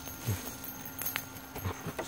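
Fidget spinner spinning fast on leaf litter, giving a faint steady hum, with a few soft knocks and one sharp click about a second in.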